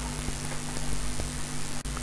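Steady low electrical hum and hiss of room tone, with one faint click about a second in.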